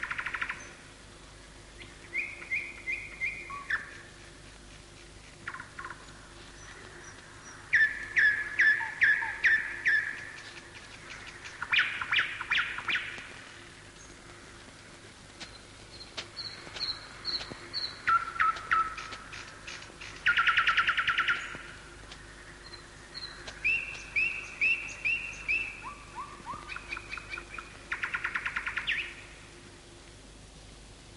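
Birds calling in a series of short phrases, each a quick run of repeated notes or a brief trill, with pauses of a second or two between them.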